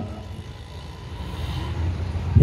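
Steady low background rumble of outdoor ambience.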